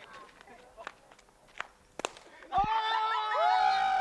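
A single sharp crack of a cricket bat striking the ball about halfway through, then several people shouting "Oh! Oh!" in excitement.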